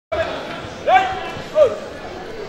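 Two short shouted calls in a large, echoing sports hall, the first rising and held, the second falling. They are typical of a karate referee's commands to the fighters at the start of a bout.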